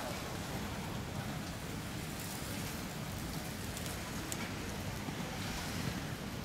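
Steady outdoor noise: an even hiss over a low rumble, with a few faint clicks and no distinct event.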